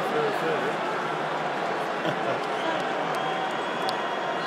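Stadium crowd chatter: a steady din of many voices, with a nearby man's voice briefly near the start.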